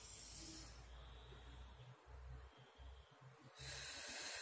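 Near silence with a faint low room hum, broken by a woman's audible breath near the end and a softer one at the very start.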